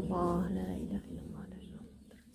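A voice chanting a prayer on a long held note that ends about half a second in, followed by soft whispering and murmuring that grows fainter.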